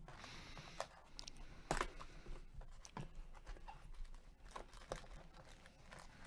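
Faint rustling and tearing of a cardboard trading-card retail box being opened by hand, with the crinkle of the foil packs inside. Scattered sharp clicks, a few per second, come as the flaps and packs are handled.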